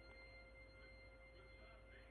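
Near silence: room tone with a faint steady electrical hum and whine.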